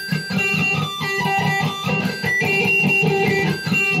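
Electric guitar with a semi-hollow body playing pinched harmonics: one low note picked rapidly over and over, with squealing high overtones ringing out above it and jumping between pitches as the pick and thumb catch the string.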